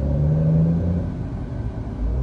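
Car engine idling, heard from inside the cabin: a steady low hum.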